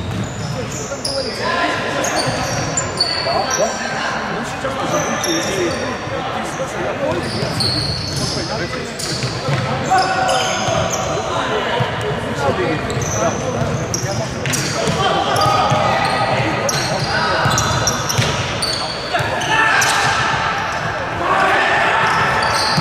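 Futsal ball being kicked and bouncing on a wooden sports-hall floor, with players calling out, all echoing in a large indoor hall.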